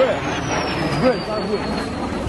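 Outdoor noise with bystanders' voices, heard through a phone recording, and a thin high whistle sliding steadily down in pitch across the two seconds.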